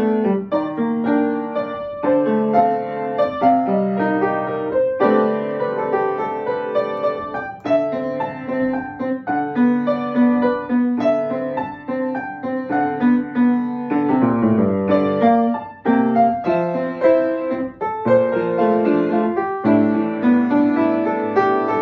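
Yamaha upright piano played solo: a continuous classical-style piece of separate, clearly struck notes, with a brief drop in sound about sixteen seconds in.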